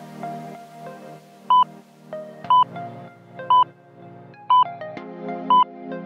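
Workout interval timer beeping out the last seconds of a rest period: five short, high electronic beeps, one a second, over background music.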